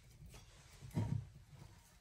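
A round wooden privy-seat lid being lifted off its hole: a soft, low bump about a second in, otherwise quiet.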